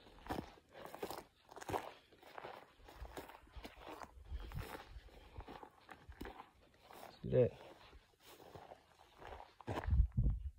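Faint, uneven footsteps of a hiker on dry bunchgrass and dirt, a scatter of short scuffs and crackles, with a brief voice sound about seven seconds in.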